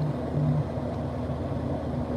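Steady road and engine noise heard inside a car cruising at motorway speed: a low, even hum over tyre and wind rush.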